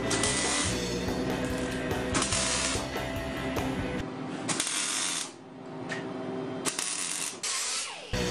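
Electric arc welding on steel plate: about five short bursts of crackling arc, each under a second and roughly two seconds apart, as seams of an armored fuel tank are tacked together. Background music plays underneath.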